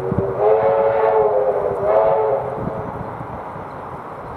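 Steam whistle of the K class steam locomotive K183, sounding a chord of several notes: a long blast of about a second and a half, then a shorter second blast straight after.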